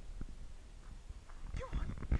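Footsteps on a dirt path giving soft, repeated thuds, with a short rising-and-falling call about one and a half seconds in.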